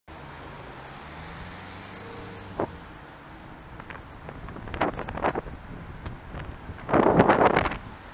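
Road traffic, with a car engine running nearby, then wind buffeting the camera microphone in gusts that get louder, the loudest about a second before the end. A single sharp click about two and a half seconds in.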